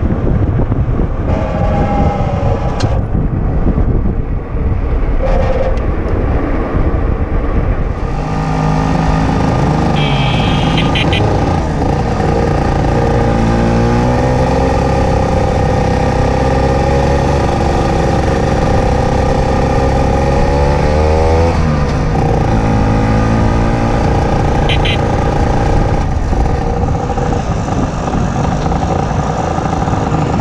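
Motor scooter engine running under way, heard from the rider's seat. Wind noise dominates the first several seconds; from about eight seconds in the engine note comes through clearly, its pitch rising and falling with the throttle. A few short high beeps are heard at about ten seconds and again near twenty-five seconds.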